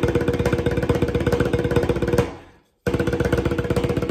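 Tarola (banda snare drum) played with wooden sticks in a fast, even roll, a ringing drum tone under the strokes. The roll stops about two seconds in and rings off, then starts again after a brief pause near three seconds.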